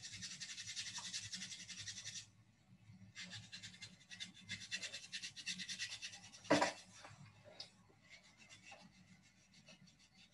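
Abrasive prep pad scrubbing the skin of the wrist in quick back-and-forth strokes, exfoliating it for a low-resistance ECG electrode connection. The scrubbing comes in two bouts with a short break after about two seconds, and a single sharp knock a little past halfway; fainter scrubbing follows.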